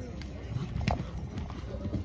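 A show-jumping horse's hooves on a sand arena as it lands from a fence and canters on: a run of dull thuds with a few sharper clicks.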